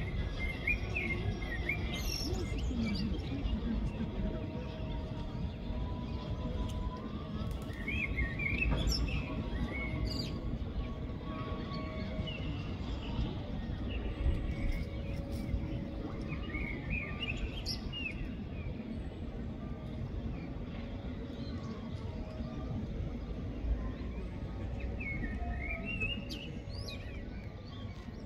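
Birds calling in short chirping, warbling phrases that recur every few seconds, over a steady low background rumble.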